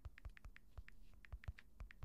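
Faint typing on a computer keyboard, a quick, uneven run of key taps as a web search is typed.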